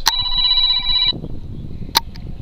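Mobile phone ringtone: a steady chord of electronic tones for about a second, then it stops. A sharp click comes just before it and another near the end.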